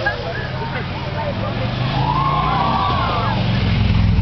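A motor vehicle approaching on the road, its engine rumble growing louder through the second half, with crowd voices over it.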